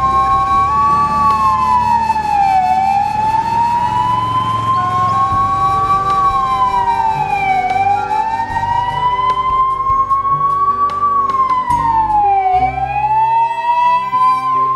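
Ambulance siren wailing: a slow rise in pitch and a quicker fall, repeating about every five seconds, three times, over soft background music.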